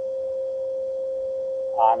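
A steady electronic tone at one constant pitch, running under the playback of a recorded phone call; a voice from the recording begins near the end.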